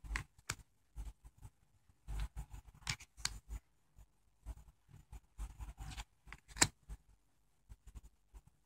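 Tarot cards being flipped off a deck one at a time and laid down on a cloth: soft slides and flicks of card stock, with a sharper snap about six and a half seconds in.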